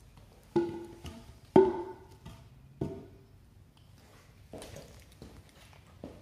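Cedar four-by-four timbers set down on a concrete floor: three sharp wooden knocks, each with a short ringing tone, the second loudest, then a few fainter knocks.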